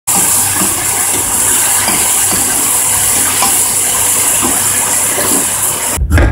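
Chicken and kabocha squash sizzling in miso sauce in a nonstick frying pan: a loud, steady hiss with a few faint clicks from a wooden utensil stirring them.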